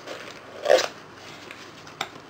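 A small cardboard box being opened by hand, its flaps rustling and scraping, with one short, loud sound under a second in.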